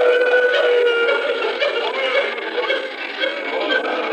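A man's voice chanting elegiac verse of a majlis recitation in a melodic, sung style, opening on a long held note and then wavering up and down in pitch. The sound is thin and narrow, as on an old tape recording.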